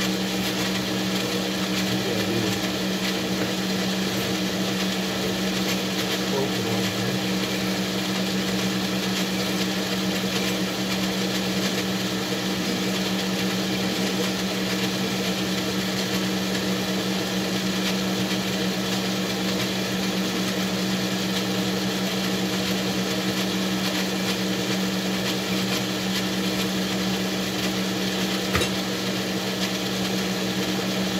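Metal lathe running steadily with a hum from its motor and spindle, as a hand file is worked against a small rod spinning in the chuck. A single sharp click near the end.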